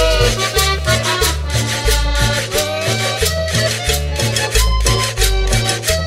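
Colombian cumbia played loud over a sonidero sound system: a stepping bass line under steady, evenly spaced percussion, with an accordion carrying the melody.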